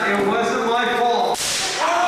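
A single sharp slap about one and a half seconds in: a wrestling strike landing, with people's voices calling out throughout.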